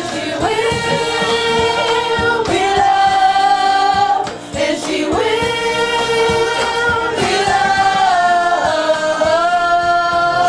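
Several women singing a pop song together in long held notes, with a short break about four and a half seconds in.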